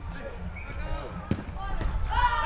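A football kicked with a sharp thud a little past halfway, with a second, fainter knock just after, over players' voices calling on the pitch.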